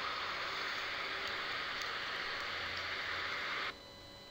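A steady hiss of background noise that cuts off abruptly near the end, leaving a much quieter background.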